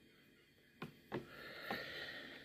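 Faint sounds of hands tying a knot in fishing line. Near silence at first, then a couple of soft clicks and a quiet rustle in the second half.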